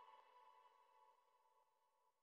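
Near silence, with a faint fading tail dying away in the first half second.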